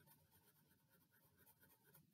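Near silence, with faint scratching of a crayon coloring on paper.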